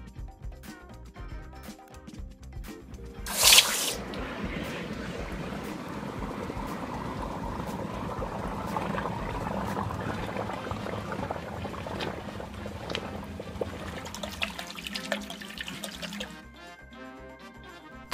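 A hot casting flask is plunged into a bucket of water to quench it. There is a sudden loud hiss about three seconds in, then a long spell of bubbling and crackling as the investment plaster breaks up in the water, dying down near the end. Background music plays throughout.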